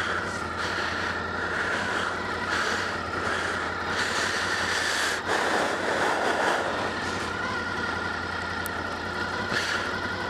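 Honda VFR800's V4 engine idling steadily while the bike stands still, picked up by a helmet-mounted camera, with a brief rush of noise about five seconds in.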